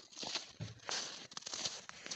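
Footsteps crunching in snow at a walking pace, several steps with small clicks between them.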